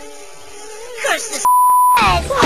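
A steady, loud, single-pitch beep tone, a censor-style bleep, lasting about half a second near the end, after a stretch of quiet cartoon voices.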